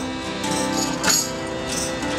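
Acoustic folk band playing between sung lines: held accordion chords under strummed acoustic guitar, with jingling percussion hits about half a second and a second in.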